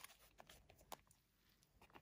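Near silence, with a few faint clicks and rustles of a faux-leather zip-around wallet being handled and spread open.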